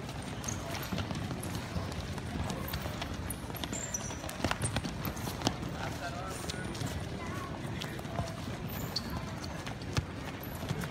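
Wrestling shoes stepping and shuffling on the mats as many wrestlers move in stance, giving quick irregular footfalls and a few short squeaks. Several louder footfalls come around the middle.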